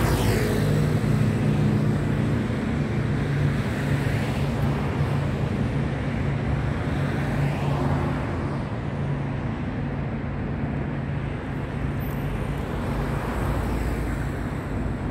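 Steady city traffic noise with the low, even hum of an engine running close by.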